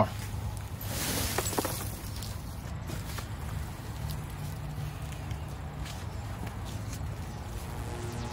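Quiet handling of a roll of landscape fabric and tape: faint rustles and a few light clicks over a low steady rumble.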